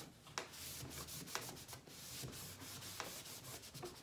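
Yellow foam buffer pad rubbing over a painted wood panel, wiping off excess liming wax: a faint, continuous scrubbing.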